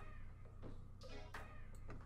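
A faint, short high-pitched call about a second in, over a steady low hum.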